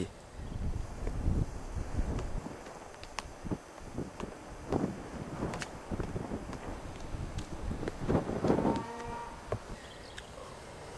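Wind buffeting a camcorder microphone, with scattered small clicks and knocks, and one short pitched call near the end.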